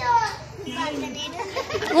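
Children's voices during an outdoor circle game: a short call right at the start, then quieter chatter and calling over one another.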